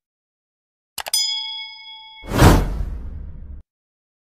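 Subscribe-button animation sound effects: two quick mouse clicks about a second in, then a bright bell ding that rings for about a second, followed by a loud whoosh that fades away.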